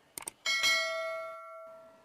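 Large aluminium cooking pot struck by the plastic bowl as sliced onions are tipped in: a couple of light taps, then a clang about half a second in that rings on like a bell and fades over about a second and a half.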